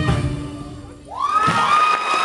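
Belly-dance music fading out at the end of the piece, then, about a second in, the audience breaking into shouts, whoops and cheers.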